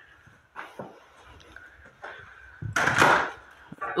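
A foot catching on clutter on a wooden floor: a loud, short scraping clatter about three seconds in as the walker trips, after a few faint knocks and shuffles.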